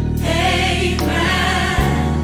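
Gospel-style choir singing over an instrumental backing with a held bass line. A sharp low beat hit lands just before the end.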